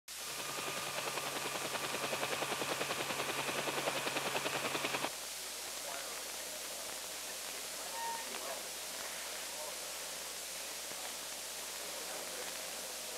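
A rapid, even electronic pulsing with steady high tones, growing louder, that cuts off suddenly about five seconds in. After it comes the steady hiss of an old film soundtrack, with one short beep about eight seconds in.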